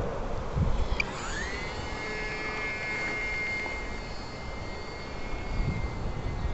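Electric motor and propeller of a small RC airplane in flight: a whine that rises in pitch about a second in as the motor speeds up, then holds steady. Wind noise on the microphone is heard at the start.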